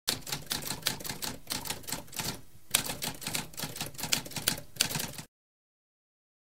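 Typewriter typing: a rapid, uneven run of key strikes with a brief pause about halfway through, stopping a little after five seconds.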